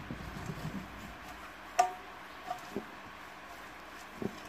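A silicone pastry brush spreading oil inside an aluminium cake tin: faint soft brushing, then a sharp tap against the tin with a brief ring about two seconds in, followed by two lighter taps.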